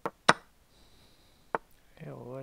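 Chess.com's move sound effect, three short wooden clicks as pieces are played: two close together at the start, the second the loudest, and a third about a second and a half in.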